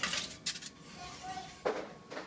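Foil-lined baking tray slid onto a metal oven rack: a few short scrapes and rattles, about half a second in and again near the end.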